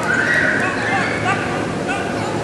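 A small child's high-pitched squeal, held for most of a second, followed by a few short squealing laughs.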